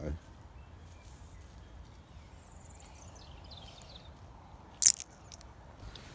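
Quiet outdoor background with a faint low rumble and some faint high chirps in the middle, then a single sharp click about five seconds in.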